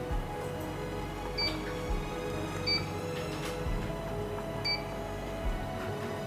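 Background music with a soft beat, over which three short, high electronic beeps sound, about 1.5, 2.7 and 4.7 seconds in: the keypad beeps of a Kett FD720 moisture analyzer as its buttons are pressed.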